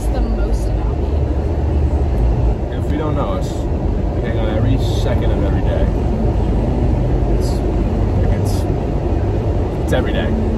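Steady low road rumble of a moving car heard from inside the cabin, with two people's voices talking over it.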